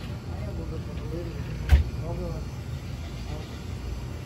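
Grocery-store background: a steady low rumble with faint voices talking in the background. One sharp knock, the loudest sound, comes a little under two seconds in.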